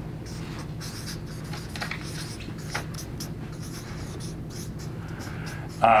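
Marker pen writing on a flip-chart pad: an uneven run of short, quick strokes as letters are drawn, over a low room hum.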